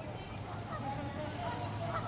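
Faint, indistinct talking of people at a distance, over a steady low hum.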